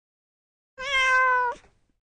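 A single cat meow, under a second long, holding a steady, slightly falling pitch and cutting off sharply.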